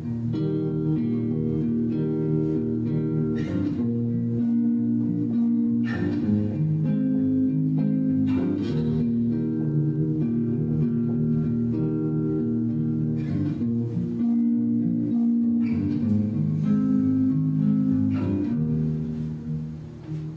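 Steel-string acoustic guitar played solo: picked chords with the notes left ringing, changing every second or two, and a chord struck harder every few seconds. The playing eases off near the end.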